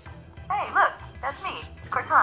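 Cortana's synthetic female voice from the laptop's speaker giving the setup greeting 'Hey look, that's me, Cortana!' in two short phrases, over the soft background music that plays during Windows 10 setup.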